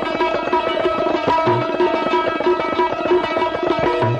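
Santoor played in a fast, dense run of hammer strokes, its struck strings ringing together, with tabla accompaniment and a deep bass drum stroke about one and a half seconds in.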